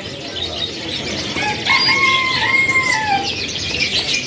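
Many caged canaries chirping and fluttering. About a second and a half in, a longer call is held for nearly two seconds, rising at the start and dropping at the end, over the chirping.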